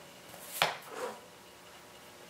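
A single light knock or tap on a wooden tabletop from handling pipe-cleaner wire, about half a second in, followed by a softer, duller handling sound.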